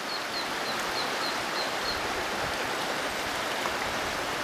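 Shallow brook running over rocks, a steady rush of water. In the first two seconds a small bird repeats a short high chirp about three times a second.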